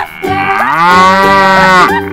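A cow mooing once: one long moo that starts about half a second in and lasts about a second and a half, rising and then falling in pitch. It is a sound effect added to match the cow-spotted toy on screen.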